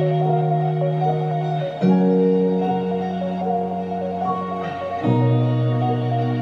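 Music playing through a pair of Micca MB42X bookshelf speakers: long held bass notes that change about two seconds in and again near five seconds, with a sustained melody above them.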